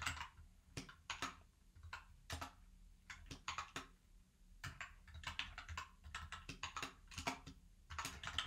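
Computer keyboard typing: irregular keystrokes, a short pause about halfway through, then a quicker run of keys.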